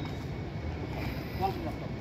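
Wind noise on the microphone, a steady low rumble, with a short vocal sound about a second and a half in. No mitt strikes land in this stretch.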